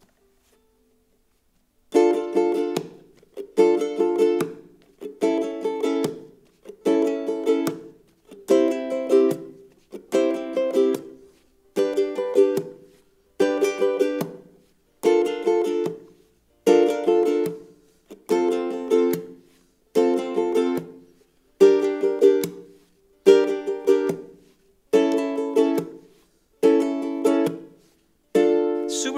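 Ukulele strummed in a repeating down-up-down-up pattern, each bar ending in a thumb slap on the fourth string that mutes the chord. It starts about two seconds in and plays some sixteen bars at a steady pace, each chord cut off short by the slap.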